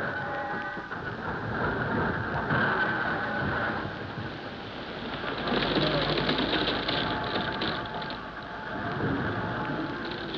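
Radio-drama sound effect of rushing sea water, a steady noisy wash that swells and dips in loudness, standing for the yacht being taken in tow by the submarine.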